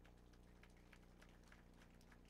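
Near silence: a steady low hum with faint, scattered ticks several times a second.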